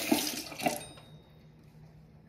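Bathroom sink faucet running onto a toothbrush, then shut off abruptly about a second in.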